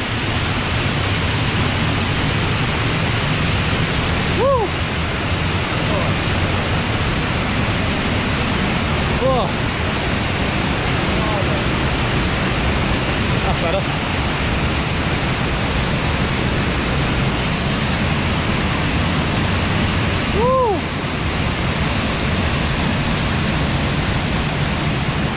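Sgwd yr Eira waterfall in heavy flow, heard at close range from the ledge behind its falling curtain of water: a loud, steady rush.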